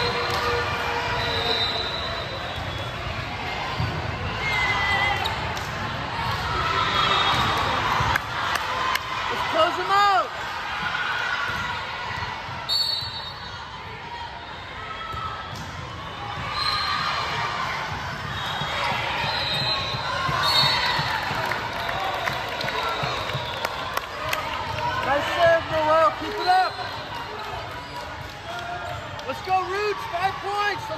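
A volleyball rally in a large gym: the ball is struck sharply several times, and short sneaker squeaks come off the hardwood court, over a steady murmur of players' and spectators' voices that echo in the hall.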